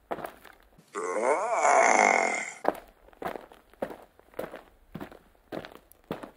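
A loud sound effect, about a second and a half long, whose pitch dips and then rises again, like a creature's burp or grunt. It is followed by light, evenly spaced stop-motion footstep sounds, about two a second, as the LEGO figure walks.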